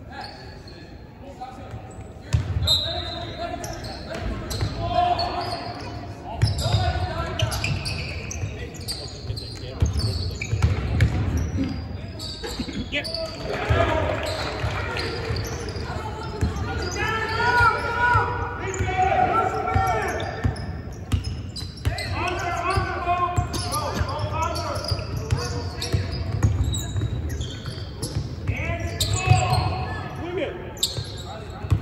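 A basketball game in a gym: a basketball being dribbled and bounced on the hardwood court in repeated thumps, with indistinct shouting from players and spectators echoing in the large hall.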